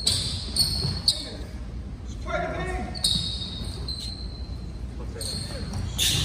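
Basketball bouncing on a hardwood gym floor amid high sneaker squeaks from players moving, with two sharp knocks about half a second and a second in. A short shout cuts in a little after two seconds.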